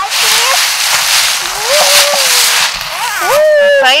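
Dry fallen leaves crunching and rustling underfoot, with a child's high voice over it; the crunching stops about three seconds in.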